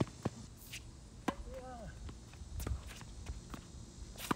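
Tennis rally on an outdoor hard court: sharp knocks of the ball off the rackets and the court, with the players' footsteps between them. A short wavering squeak sounds in the middle.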